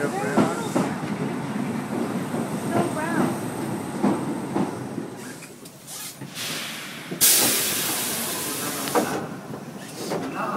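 Tobu electric commuter train standing at the platform with passengers' voices around it. About seven seconds in comes a loud burst of compressed-air hiss from the train, lasting nearly two seconds.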